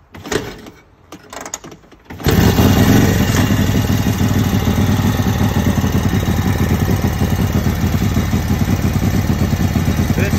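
Harley-Davidson WL's 45 cubic inch flathead V-twin kick-started cold on half choke: a few low knocks, then the engine catches about two seconds in and runs steadily.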